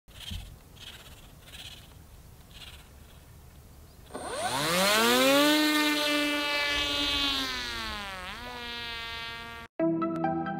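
Drone's electric motor and propeller spinning up to a steady high buzz about four seconds in, dipping in pitch briefly and rising again near the end before cutting off suddenly.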